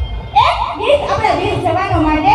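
A girl's voice amplified through a handheld microphone and PA loudspeakers, in short phrases that glide up and down in pitch, starting about a third of a second in over a steady low rumble.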